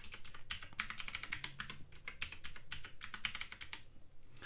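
Rapid typing on a computer keyboard: a steady run of keystrokes, several a second.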